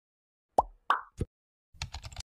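Intro sound effects: three short pops about a third of a second apart, then a quick run of keyboard-typing clicks as text is typed into a search bar near the end.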